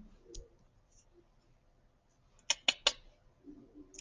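Three quick, sharp clicks about a fifth of a second apart, a little past halfway, in an otherwise quiet room.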